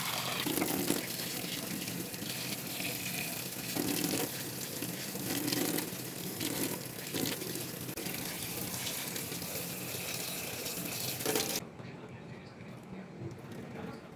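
Tap water running steadily into a stainless steel sink while makeup sponges are squeezed and rinsed under the stream. About three-quarters of the way through the sound drops suddenly to a quieter, thinner flow.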